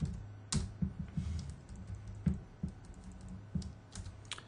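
Computer keyboard keys being tapped in a short irregular run of clicks as a six-digit stock code is typed into trading software, over a steady low hum.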